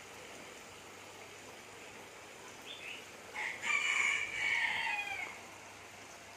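A rooster crowing once about halfway through, a single long call of about two seconds that falls in pitch at the end, over a faint steady hiss.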